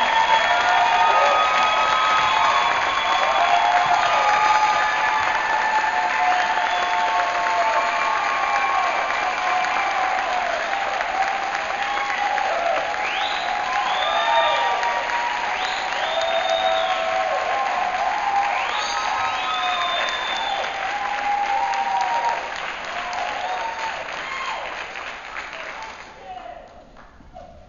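Theatre audience applauding and cheering, with many whoops over the clapping, dying away over the last few seconds.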